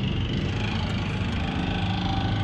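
A motor vehicle engine running steadily nearby, a low even rumble.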